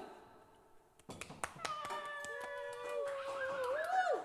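Scattered hand claps from a single listener, starting about a second in, with a long high held tone over them that bends in pitch near the end.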